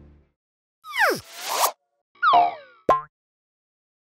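Cartoon-style sound-effect sting for a logo: a quick falling glide, a short swish, a second falling glide, then a short sharp plop, each separated by silence.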